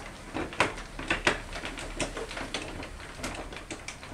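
Wooden treadle spinning wheel being turned by foot, with repeated knocks and clicks from its treadle, drive wheel and flyer, roughly two a second and not quite even.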